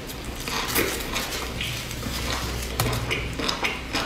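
Close-miked chewing: irregular crackly mouth and chewing noises from a person eating fried food, over a low steady hum.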